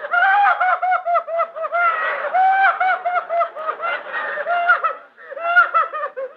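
A woman's high-pitched hysterical laughing, a rapid string of short rising-and-falling laughs with a brief break about five seconds in.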